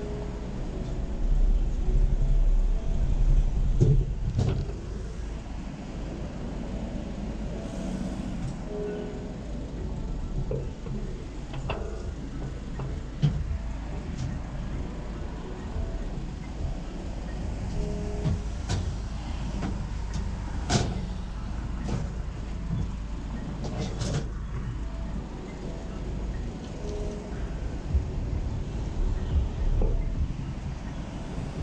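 Steady low rumble of street traffic below an apartment balcony, swelling louder for a few seconds near the start. Scattered sharp knocks and clicks are heard over it.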